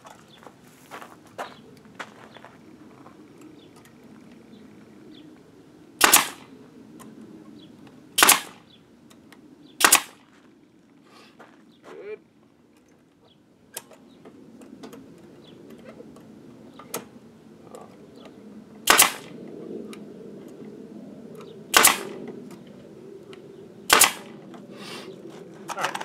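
Pneumatic brad nailer driving 1.5-inch brads into OSB. It fires six sharp shots: three about two seconds apart in the first half and three more in the second half.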